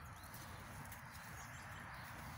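Quiet, with faint soft rustling and light thuds as a beagle rolls and squirms on its back in grass.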